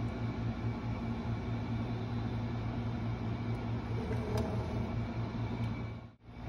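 An electric fan running with a steady low hum and an even hiss.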